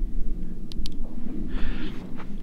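Two quick, faint clicks of a pistol-mounted Olight Valkyrie PL-2 weapon light's side button being pressed, over a steady low rumble.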